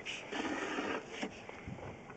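Sewer inspection camera's push cable being pulled back out of a cast-iron line: a click, then about a second of scraping, and another click.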